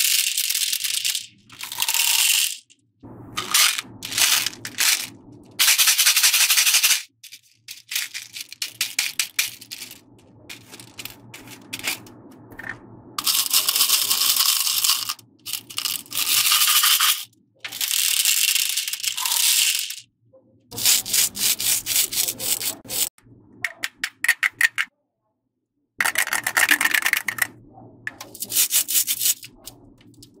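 Small plastic beads pouring out of a plastic jar and clattering into a plastic tray and against each other, a rapid patter of many small clicks. It comes in bursts of a few seconds with short breaks between.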